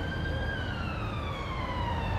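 Emergency vehicle siren wailing, its pitch peaking about half a second in and then falling slowly, over a low rumble.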